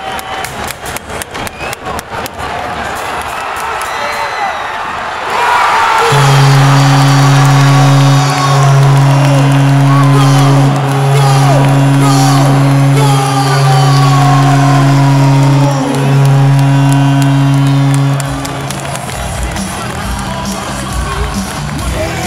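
Arena crowd clapping in rhythm, about four claps a second. Then a loud, low arena horn sounds in five long blasts of about two seconds each over crowd shouts, followed by music with a beat: the arena's goal celebration.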